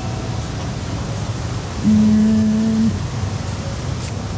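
A person humming a held "mm" on one flat pitch for about a second, near the middle, over the steady background noise of a shop floor.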